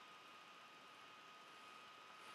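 Near silence: room tone, a faint steady hiss with a thin steady tone.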